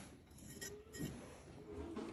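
A few faint metallic clinks, about half a second and a second in, as a steel license-plate bracket with two rod stems is handled at the front of the truck.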